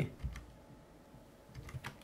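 Keystrokes on a computer keyboard while code is being edited: a few soft clicks, then a quick run of several keys near the end.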